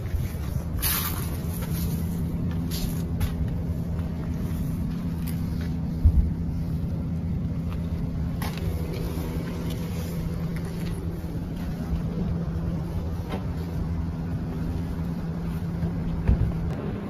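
A vehicle engine idling with a steady low hum, with a brief thump about six seconds in.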